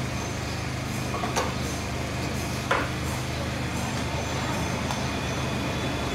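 Hand-lever bench press clicking twice, about a second apart, as LED bulbs are pressed together. A steady low hum runs underneath.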